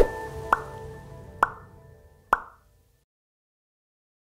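Closing music sting of a TV news channel's logo end card: three sharp plucked notes about a second apart over a fading held tone, dying away about two and a half seconds in.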